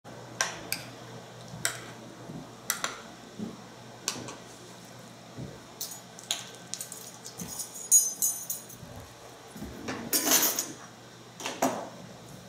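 Metal spoon clinking against a stoneware bowl: irregular sharp, ringing clinks, with a quick flurry of clinks a little past the middle and a short scrape near the end.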